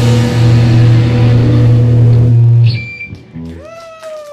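Live rock band holding a loud, sustained final chord on distorted guitars and bass, which cuts off a little under three seconds in and dies away. A single long tone that rises briefly, then slowly falls, begins near the end.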